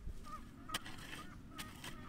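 Faint outdoor background with two short, distant bird calls, one near the start and one past the middle, and a few light clicks.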